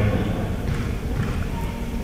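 Gymnasium crowd murmur with a few soft knocks during a stoppage in play.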